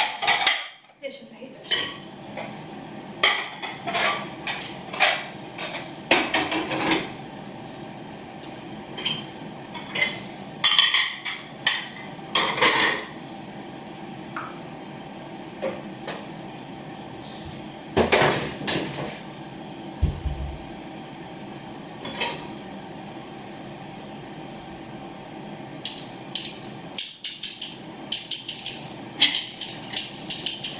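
Ceramic plates and dishes clinking and knocking as a dishwasher is unloaded and the dishes are stacked and put away, in irregular clatters with a quieter lull about two-thirds of the way through. A faint steady hum runs underneath.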